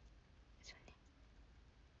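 Near silence: room tone, with one faint, short breathy hiss a little under a second in, like a whispered sound or breath from the speaker.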